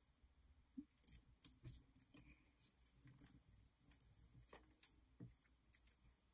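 Faint, scattered crinkles and clicks of adhesive copper foil tape being folded back on itself and pressed down onto cardstock.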